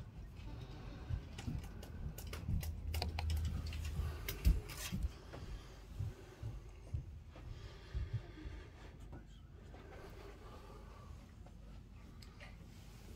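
Scattered clicks of typing on a computer keyboard, with low thumps and rumble through the first half; the loudest thump comes about four and a half seconds in.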